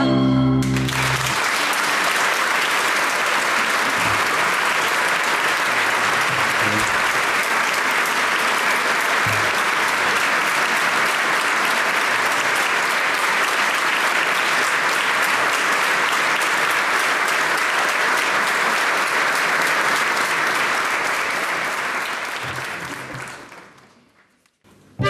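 The last note of the music stops within the first second, then a large audience applauds steadily. The applause fades out near the end.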